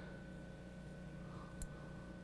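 Faint steady hum with a thin high whine running through it, and one small click about one and a half seconds in.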